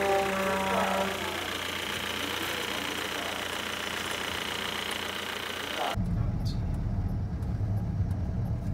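A steady hum with a short spoken word near the start; about six seconds in, the sound cuts abruptly to the low rumble of engine and road noise inside a moving Suzuki Swift's cabin.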